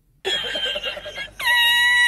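A man laughing hysterically in a very high pitch: short squealing bursts that start about a quarter second in, then one long held squeal from about a second and a half in.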